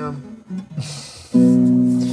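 Classical nylon-string guitar: a single chord strummed a little over a second in, left ringing and slowly fading.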